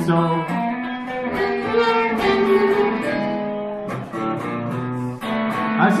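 Live blues band playing an instrumental fill between sung lines, with guitar and amplified blues harmonica holding sustained notes.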